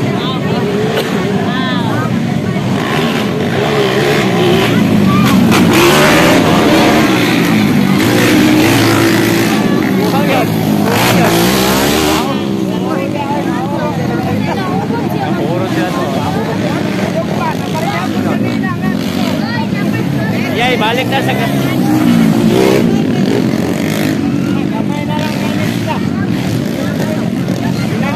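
Motocross dirt bike engines revving as the bikes race past, the pitch rising and falling with throttle and gear changes. The engines are loudest twice, for several seconds a few seconds in and again briefly near the end.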